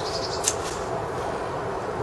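Steady background noise of an open-air recording, with a brief click about half a second in.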